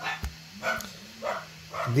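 A dog barking in the background: three short barks about half a second apart.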